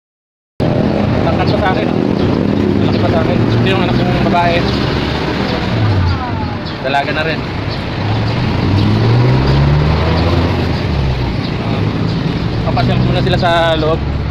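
Steady roadside traffic noise, with a vehicle engine rising in pitch around the middle and people's voices talking over it now and then.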